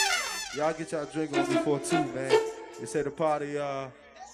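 A live band's held final chord cuts off and dies away at the start, then a man talks on the microphone in short phrases.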